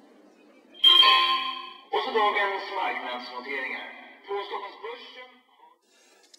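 Bell-like chimes ringing as a closing-time signal: a sharp strike about a second in, a second, fuller ring around two seconds, then fainter notes dying away before the five-second mark.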